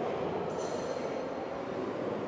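Steady rushing noise with no speech or music, with faint high whistling tones appearing about half a second in.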